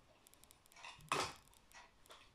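A small glass plate being lifted away from a snap-circuit detector's metal leads on a wooden table: a few faint clicks and clinks, and one louder brief handling noise about a second in.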